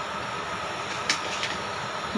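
Steady kitchen background hum and hiss with a faint high tone, and two light clicks a little after a second in from a metal spoon against the aluminium curry pot.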